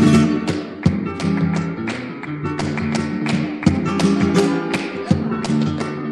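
Flamenco colombiana played on Spanish guitar, strummed and picked chords, with sharp percussive taps several times a second running through it.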